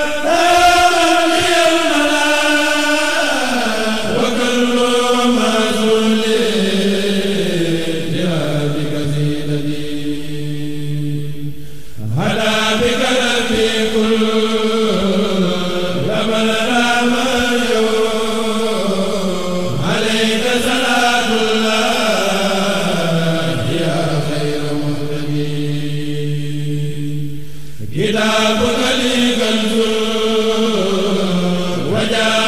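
A man's voice chanting Arabic religious verse in the Mouride khassida style. He sings long held notes in phrases several seconds long, each starting high and stepping down, with a new phrase starting about every eight seconds.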